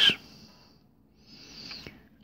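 A spoken word ends with a short hiss, then a pause in which a faint breath is drawn in, growing slightly louder in the second half before speech resumes.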